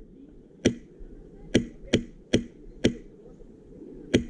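Airsoft guns firing single shots: five sharp cracks at uneven intervals, about half a second to a second apart.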